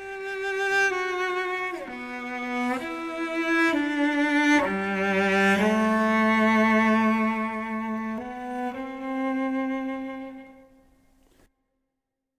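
Solo cello playing a slow, smooth bowed melody of long held notes, sliding between some of them, with the last note dying away about a second before the end.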